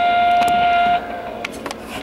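Telephone hold music heard down a phone line: one long held, woodwind-like note for about the first second, then quieter accompaniment.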